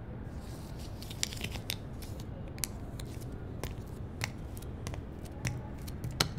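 Scissors snipping flower stems over newspaper: a string of irregular sharp snips, about eight, with light rustling between them.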